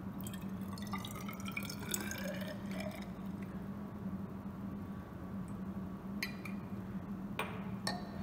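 Water poured from a glass flask into a glass graduated cylinder, the pouring note rising in pitch as the narrow cylinder fills over the first couple of seconds, then trickling and dripping. A couple of sharp clicks near the end, over a steady low hum.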